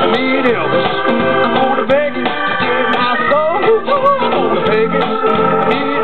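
Live band playing: chords held on a Hammond XK-1 organ under electric guitar, bass guitar and drums, continuous and steady in loudness.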